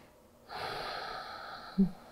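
A woman taking a deep breath in, an audible airy draw lasting a little over a second, followed by a brief voiced sound near the end.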